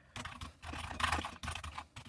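Typing on a computer keyboard: quick runs of key clicks.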